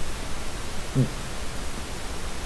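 Steady hiss of recording noise from a webcam microphone, with a brief low voiced sound, a short 'mm', about halfway through.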